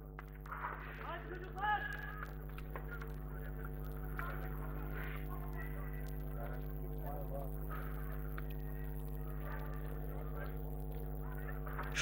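Faint, distant voices of people on the pitch with a short call near the start, over a steady electrical hum.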